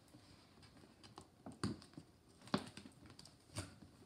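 Wrapping paper and tape on a present being picked at and pulled, giving a few short, sharp crackles spaced about a second apart.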